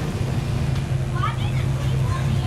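A vehicle engine idling steadily, a low even hum, with brief faint voices about a second in.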